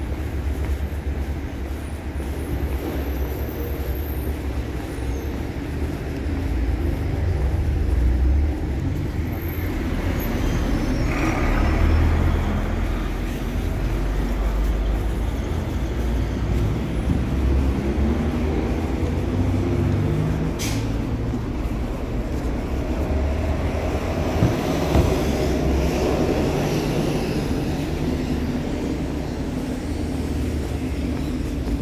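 City street traffic: cars and buses passing on the avenue, a steady low engine rumble that swells as vehicles go by, with a bus engine running past in the second half.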